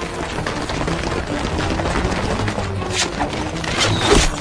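Film soundtrack: dramatic music over the dense, rapid clatter of a troop of armoured soldiers charging on foot, with a few sharper impacts near the end.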